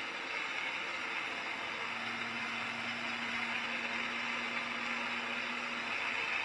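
Holmer Terra Variant 600 self-propelled slurry applicator running as it drives across the field, heard from inside its cab as an even, steady hum. A steady low tone comes in about two seconds in and holds.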